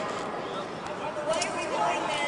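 Indistinct voices of several people talking over each other during the arrest, with no clear words.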